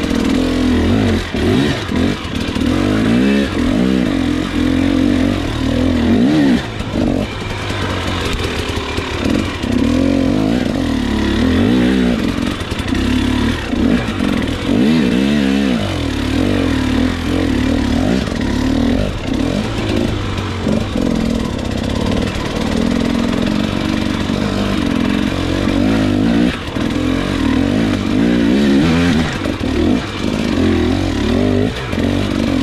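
KTM 300 XC two-stroke single-cylinder dirt bike engine being ridden over rough trail, its revs rising and falling constantly as the throttle is worked.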